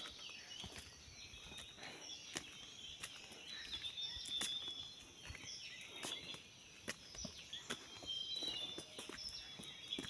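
Irregular footsteps and scuffs of people walking up an outdoor stone stairway, with faint bird chirps in the background.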